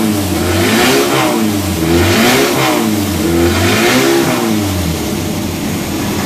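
MGB B-series four-cylinder engine with a crossflow cylinder head, breathing through twin side-draft carburettors, run on a dynamometer and blipped: the revs rise and fall repeatedly, about once a second. Near the end it drops back to a lower, steadier speed.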